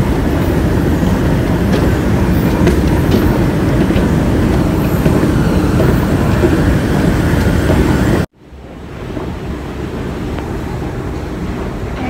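Loud, steady rumbling noise of a metro station interior heard from a moving walkway. The noise cuts off abruptly about eight seconds in, and a quieter steady hum takes over.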